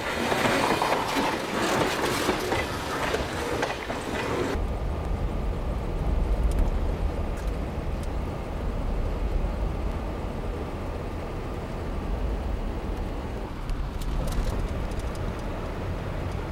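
Freight train tank cars rolling past at close range, their steel wheels running on the rails. About four and a half seconds in, this cuts off abruptly to the steady low rumble of a car driving, heard from inside the cabin.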